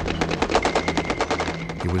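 Rapid rifle and machine-gun fire: a dense, unbroken run of shots at about a dozen a second.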